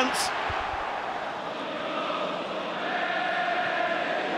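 Football stadium crowd noise, with fans singing a sustained chant that rises out of the din in the second half.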